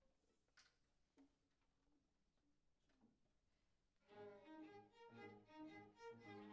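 After a near-silent pause broken by a couple of faint knocks, a string ensemble comes in together about four seconds in, playing held bowed notes in several parts at once.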